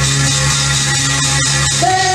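Instrumental backing track playing between sung lines, over a steady low bass note; a long held note comes in near the end.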